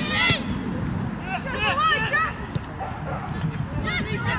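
Women footballers shouting and calling to each other during play, in short, high-pitched calls, loudest at the very start and again between one and two seconds in, over a steady low rumble.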